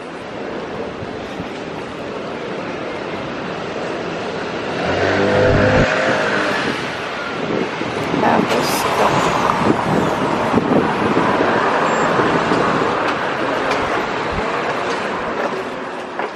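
Street traffic noise with a steady background hum; a car engine grows louder and passes close by about five seconds in.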